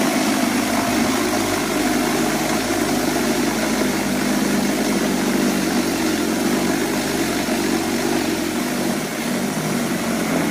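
Toro 60V cordless power shovel running steadily, its brushless electric motor spinning the rotor as it is pushed through heavy, slushy snow and throws it aside.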